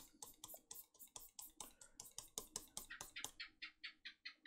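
Faint, rapid scratching of a pen stylus on a drawing tablet: quick short hatching strokes, several a second.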